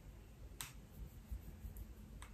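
A quiet room with one faint, sharp click about half a second in and a couple of fainter ticks after it.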